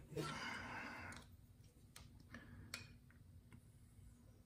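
Faint handling sounds of an open folding knife and a brass plate: a soft rustle for about the first second, then a few light clicks.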